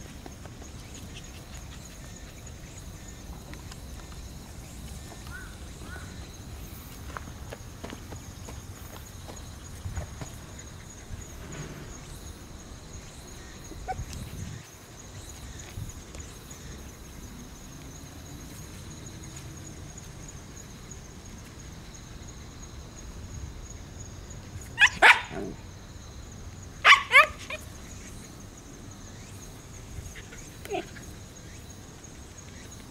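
A dog barking: two loud barks about twenty-five seconds in, then two more about two seconds later, over a quiet outdoor background with a faint steady high tone.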